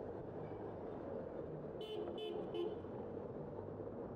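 A car horn sounding three quick short toots about two seconds in, over the steady rumble of passing traffic.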